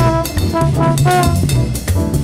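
Modal jazz quintet recording from 1970: brass horns, with trombone to the fore, play short, punchy phrases over bass and drums.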